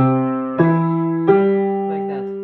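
Piano playing three notes one after another, about 0.6 s apart and rising in pitch, a broken C–E–G figure below middle C. Each note is struck and left ringing while it slowly fades.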